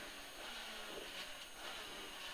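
Faint, steady engine and road noise of the 1440cc 16-valve Mini rally car, heard inside its cabin while it drives a wet stage.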